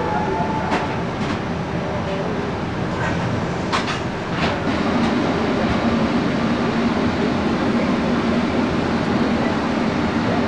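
Steady rumble of onboard machinery and ventilation inside a submarine compartment, with a few sharp clicks in the first half; a steady low hum joins about halfway and the noise grows slightly louder.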